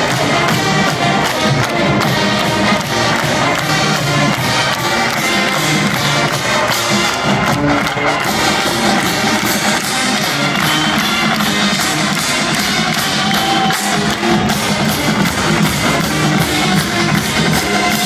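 A full marching band playing: brass with sousaphones, backed by a drumline, in one continuous passage.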